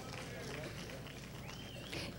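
Faint background of a large hall through the PA recording: a steady low hum with faint, distant voices murmuring.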